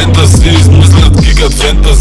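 Bass-boosted hip hop track: rapped Bulgarian vocals over heavy bass with sliding bass notes and a beat.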